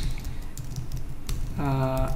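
Computer keyboard typing: a run of irregular key clicks as a line of code is typed.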